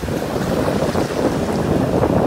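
Wind buffeting the microphone over the wash of a wave running up the sand and swirling around bare feet in the shallows.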